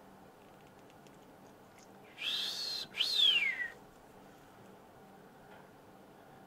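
A person's two-part wolf whistle about two seconds in: a short, slightly rising whistle, then a longer one sliding down in pitch, in admiration.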